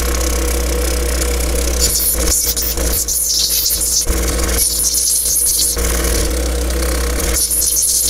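Motor of a wet lapidary grinding machine running with a steady hum while opal is ground against one of its spinning wheels to take off the residual sandstone. A hiss of grinding swells and drops several times as the stone is pressed to the wheel and eased off.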